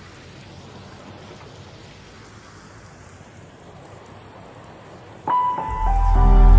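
Recorded rain falling, a steady even hiss, in an 8D-style panned mix. About five seconds in, piano notes enter, followed by a deep bass note, and the music gets much louder.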